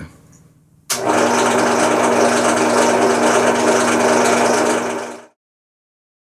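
Electric drill running at a steady speed, drilling out the front-sight pin in a revolver's barrel. It starts suddenly about a second in and runs for about four seconds before cutting off.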